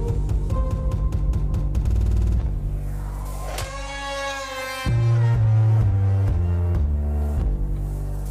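Electronic dance music for a dance routine: a stuttering run of rapid clicks over bass, a short break with a held chord about three and a half seconds in, then a heavy bass line coming in about five seconds in.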